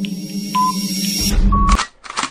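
Countdown timer sound effect over background music: a short electronic beep about once a second with a click above each. A final, slightly higher beep comes about one and a half seconds in, over a low rumbling transition effect that ends in a short burst of noise as the countdown runs out.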